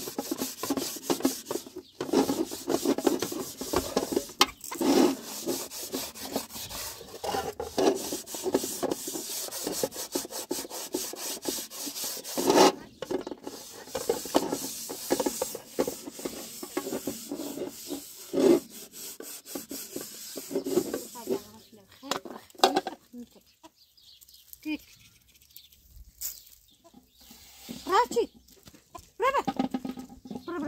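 A metal cooking pot scrubbed by hand, a quick run of rough rubbing strokes with a few louder knocks of the pot. The scrubbing stops a few seconds before the end.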